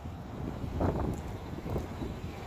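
Wind buffeting the microphone outdoors: a low, uneven rumble that picks up shortly after the start, with a faint higher-pitched sound about a second in.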